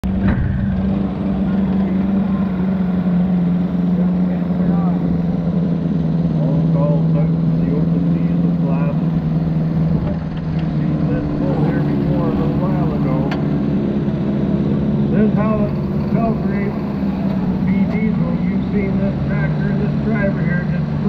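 Diesel garden tractor engine idling steadily at low speed, with voices talking over it.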